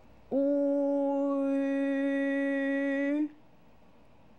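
A voice holding one long Mandarin ü vowel at a steady, level pitch for about three seconds, as a pronunciation demonstration; the vowel brightens about a second in as it moves toward the rounded 'ee' sound.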